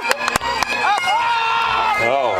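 People shouting encouragement during a caber throw, with one voice holding a long yell from about a second in. A couple of sharp knocks sound near the start.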